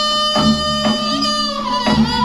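Live Korean traditional dance accompaniment: a held wind-instrument melody over drum strokes about every three-quarters of a second.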